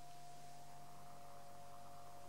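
A small DC motor used as a vibrator, driven back and forth at 47 Hz by a function generator, gives off a faint, steady electrical hum while it shakes a stretched rubber band in a standing wave.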